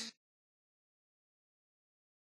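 Near silence: the song's last trace cuts off abruptly at the very start, then dead digital silence.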